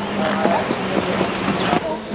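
Track ambience: a steady low hum under faint, indistinct voices, with a harness horse's hoofbeats on the dirt track.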